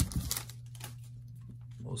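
Faint rustling and light ticks of a freshly opened stack of baseball cards and its paper pack wrapper being handled.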